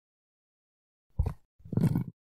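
A low, rough sound in two bursts, starting about a second in: a short one, then a longer, louder one, added as the halved butternut squash comes apart.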